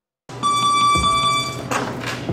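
A steady electronic tone starts suddenly and holds for about a second, then gives way to a run of low thumps over a noisy background.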